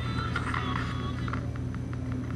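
Handheld spirit box, a radio that scans rapidly through stations, giving a steady hum and static broken by short clicks and brief snatches of radio sound.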